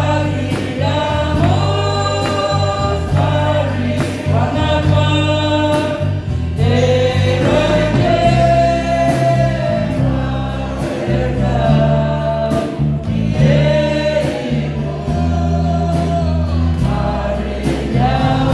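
A group of voices singing a gospel song together, amplified through a sound system, over instrumental accompaniment with steady bass notes and a regular beat.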